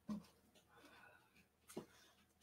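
Near silence: room tone, broken by a brief faint sound just after the start and another near the end.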